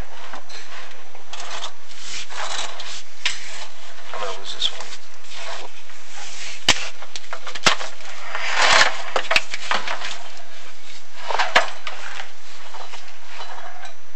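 Chimney inspection camera scraping and rubbing along the creosote-coated flue wall as it is lowered, with irregular bursts of rasping and a few sharp clicks or knocks in the middle of the stretch.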